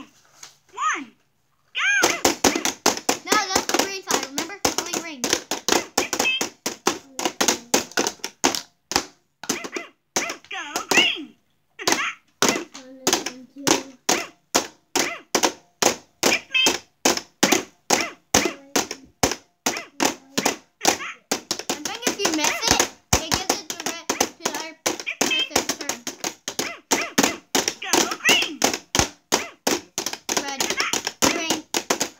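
Plastic mallets rapidly tapping the light-up buttons of an electronic whack-a-mole game, about three to four hits a second, starting about two seconds in, with children's voices in between.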